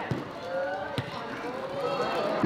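Players calling out to each other on a football pitch, with one sharp kick of the ball about a second in.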